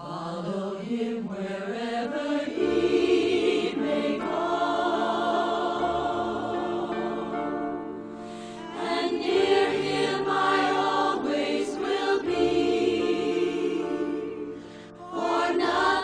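A choir singing slow, sustained chords in a hymn-like style, the level dipping briefly about eight seconds in and again just before the end.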